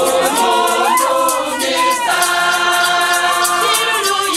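Women's church choir singing in unison and harmony, the voices gliding between notes and then holding a sustained chord from about halfway through, over a steady rattling beat of shakers.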